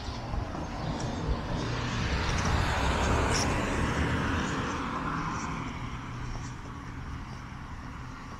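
A vehicle passing by, its noise swelling to a peak about three seconds in and then fading away.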